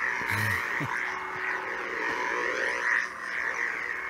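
Electronic hum and swing sounds of two sound-equipped lightsabers being spun. A steady buzzing hum bends up and down in pitch with each swing.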